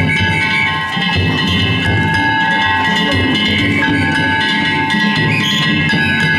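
Danjiri float music (narimono): a taiko drum beaten in a quick, continuous rhythm under the steady clanging ring of hand-struck metal gongs (kane).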